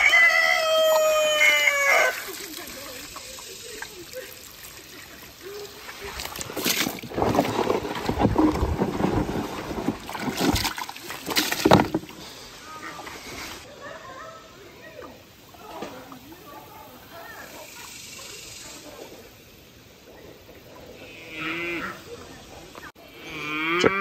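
Water from a garden hose running into a plastic water trough, splashing and churning, louder in the first half and softer later. It opens with a short call that falls in pitch.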